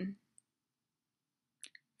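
Near silence after a voice trails off, broken by a single short click about one and a half seconds in.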